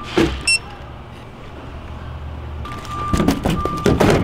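Freeosk sample kiosk giving a short electronic beep, then its dispensing mechanism running with a low hum for about two seconds. Near the end comes a run of clattering knocks as a cardboard sample box drops into the delivery slot and is handled.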